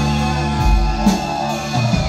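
Live rock band playing: electric guitar and synth keyboards over a deep bass line that moves between notes.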